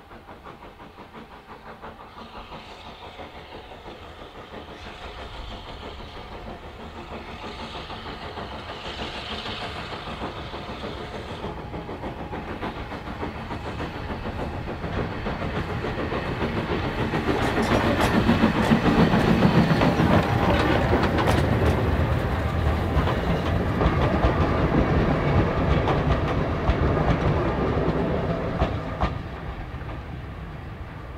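Lambton tank no.29, a steam 0-6-2 tank locomotive, approaching under steam with a carriage. Its exhaust and running sound grow steadily louder until it passes close about two-thirds of the way in, wheels clattering over the rail joints, then the sound falls away as it moves off.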